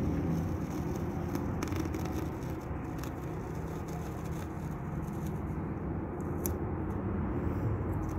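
Steady low background hum and rumble with no distinct events, only a faint click or two.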